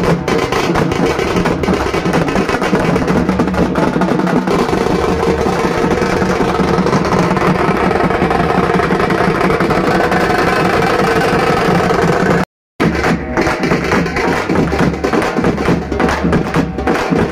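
Loud, dense drum-led percussion music with no let-up. It cuts out completely for a split second about twelve and a half seconds in.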